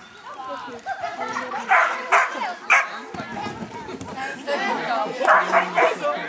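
A dog barking in short sharp barks, three about two seconds in and three more near the end, with people's voices underneath.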